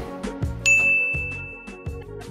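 A single bright chime strikes about two thirds of a second in and rings on one steady high note for over a second, over background music with a steady beat.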